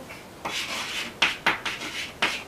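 Chalk writing on a blackboard: a string of short scratchy strokes starting about half a second in.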